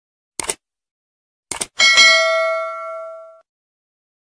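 Subscribe-button sound effect: short mouse clicks about half a second in and again at about a second and a half, then a single notification-bell ding that rings out for about a second and a half.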